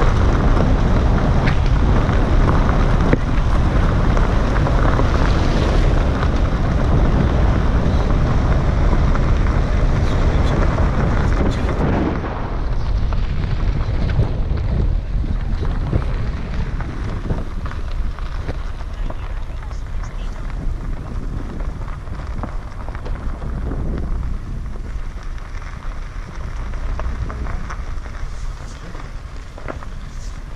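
Car driving on a gravel road: steady tyre and road noise with wind on the microphone. About twelve seconds in, the noise drops and thins as the car slows, leaving scattered crunches and clicks of gravel under the tyres.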